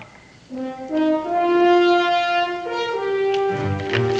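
Dramatic orchestral underscore led by horns and brass. It comes in about half a second in with a series of long held notes that change pitch, and a heavy low note or drum enters near the end.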